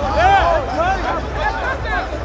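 Several men shouting and cheering over one another, excited overlapping voices in celebration of a touchdown.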